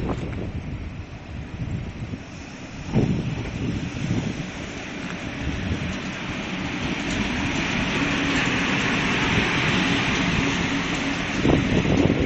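EU07A-001 electric locomotive, an EU07 rebuilt with asynchronous traction motors, running slowly past on a shunting move. Its running noise builds up and grows louder through the second half, with a faint steady tone beneath it.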